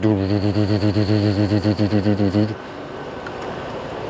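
A man imitating a diesel engine's sound with his voice: a low, steady droning hum with a slight regular wobble that lasts about two and a half seconds and then stops abruptly. Faint background noise follows.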